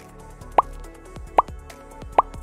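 Background music with two short rising 'bloop' pop sound effects, about half a second in and again just under a second later. They are the kind of effect that marks text popping onto a title card.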